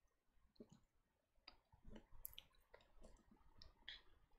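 Near silence with faint, scattered clicks, irregularly spaced and more frequent in the second half.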